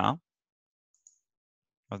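A single faint computer mouse click about a second in.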